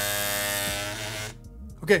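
Feiyutech Scorp Mini 2 gimbal motors buzzing steadily after power-on, then dying away about a second and a half in. The motors are vibrating because the gimbal is still set for a different payload, which an auto calibration fixes.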